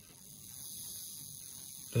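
Hornby Ringfield model railway motor running on the bench, driving its worm, with a quiet, steady high-pitched whir that builds up over the first half second. It is running smoothly on a new commutator, its freshly refaced brushes still bedding in.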